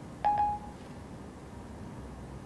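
A short electronic chime from an iPhone 4S: Siri's single-note tone, about half a second long, marking the end of listening to a spoken request.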